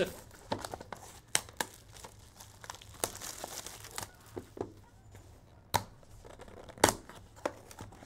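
Plastic wrapping on a trading-card box being crinkled and torn, with scattered cardboard scrapes and taps and a few sharp cracks as the box is worked open by hand.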